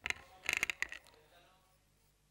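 Handling noise from a gooseneck desk microphone being grabbed and bent: a quick run of clicks and rubbing knocks in the first second.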